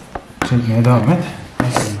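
A person's voice talking, with a sharp tap just before it starts.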